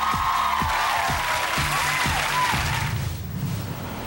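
Studio audience applauding over upbeat show music with a steady beat; the applause dies away about three seconds in, leaving the music.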